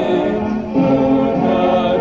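Group of voices singing a Malayalam Kingdom song (hymn) with music, in long held notes; the sound dips briefly about two-thirds of a second in as the voices move to a new note.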